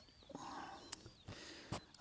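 Quiet rural outdoor ambience: faint thin high chirps and two soft clicks.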